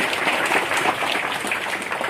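A large crowd applauding steadily, many hands clapping at once.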